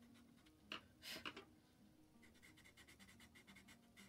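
Derwent tinted charcoal pencil scratching faintly on black paper in quick short strokes, with a brief louder hiss about a second in.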